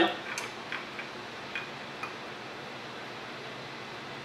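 A few faint, light clicks of a metal tool working at the edge of an iPhone 6 logic board's metal shield, in the first two seconds, over a steady background hiss.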